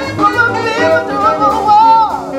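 Live jazz: a female singer holds long notes with wide vibrato over saxophone and the band, rising to a strong held high note near the end.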